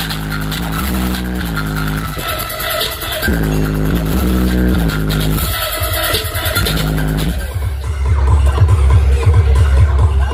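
Electronic dance music (a DJ remix) played loud through a large sound-system rig during a sound check, dominated by deep bass. About three quarters of the way in, a heavier, pulsing bass line comes in and the music gets louder.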